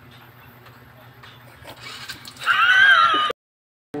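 Low steady background hum, then about two and a half seconds in a loud, high-pitched, wavering vocal cry from a person that lasts under a second and cuts off abruptly.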